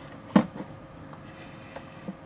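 Faint ticks and scrapes of a hobby knife blade cutting the paper seal sticker on a clear plastic toy case, with the case being handled.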